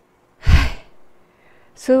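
A woman's heavy sigh close to the microphone, a single breathy puff about half a second in. She begins speaking near the end.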